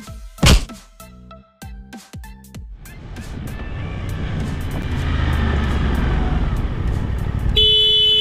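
Electronic backing music for about the first three seconds. It gives way to motorcycle riding noise, engine and wind, that builds as the bike pulls away. Near the end comes one short toot of a vehicle horn.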